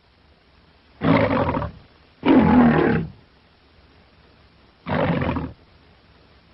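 A lion roaring three times on an old film soundtrack for the MGM logo, with faint hiss between the roars. The second roar is the longest and loudest; the sound is dull, with no top end.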